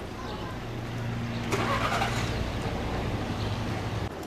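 A car engine running steadily with a low hum that sets in under a second in, and a brief louder rush about a second and a half in.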